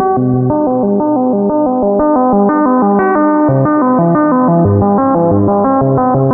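Critter and Guitari Pocket Piano MIDI synthesizer playing a fast arpeggio, about five notes a second, with lower notes moving beneath, drenched in reverb.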